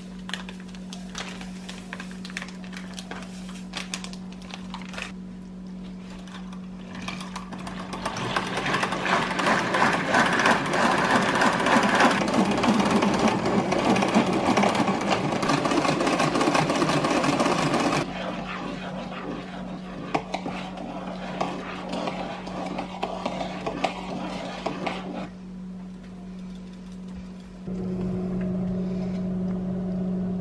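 Hand-cranked rotary egg beater whirring and clattering as it whips a liquid mousse mixture in a bowl, loudest for about ten seconds in the middle and quieter afterwards. A steady low hum runs underneath.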